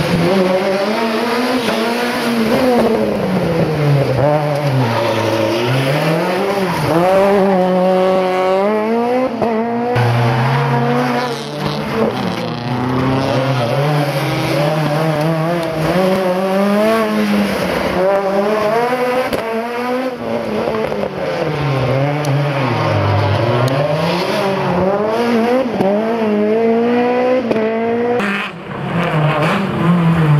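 Rally car engine revving hard through tight corners, its pitch climbing under acceleration and falling on lift-off and gear changes every few seconds. Loudness dips briefly near the end.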